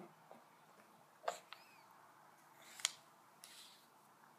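Felt-tip marker tapping and scribbling on paper over a plastic high-chair tray: two sharp taps about a second and a half apart, with short scratchy strokes around them.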